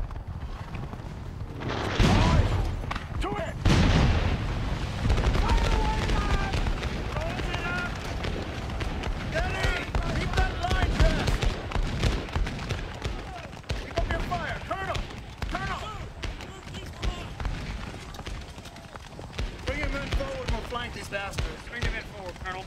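Battle gunfire from massed Civil War rifle-muskets: two heavy volleys about two and four seconds in, then continuous crackling musket fire. Many men shout and yell over the shooting.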